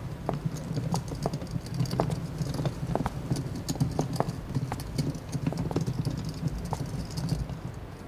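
Many irregular sharp taps and clicks over a steady low rumble, stopping about seven and a half seconds in.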